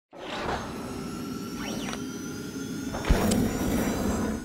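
Animated logo intro sting of whooshing sound effects, with a few quick pitch sweeps in the middle and a sharp hit about three seconds in that rings on.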